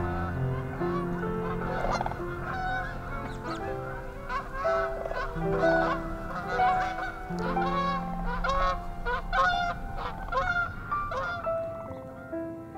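A long run of quick, repeated honking calls from large birds, over slow piano music.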